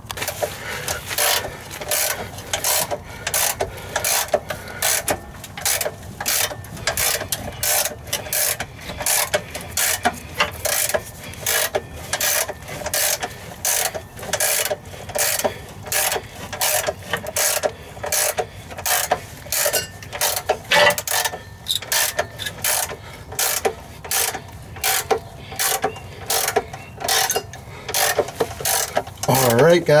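Ratchet wrench clicking steadily, about two clicks a second, as it cranks the lead screw of a scissor-type transmission jack to lower a transmission.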